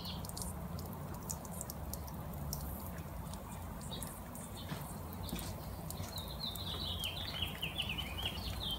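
Quiet background with a faint low hum and a few small clicks; a small bird sings a quick series of short, repeated chirps starting about two-thirds of the way through.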